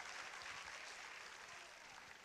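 Faint applause from the congregation, slowly dying away.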